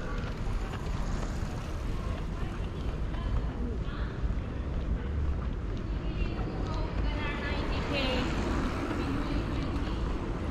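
Outdoor street ambience: a steady low rumble of wind on the microphone and distant traffic, with voices, clearest in the second half.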